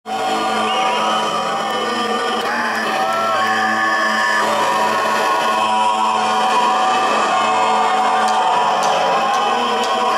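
Live rock band playing on stage, held steady notes and chords, heard from within the audience, with voices from the crowd rising over the music in the first few seconds.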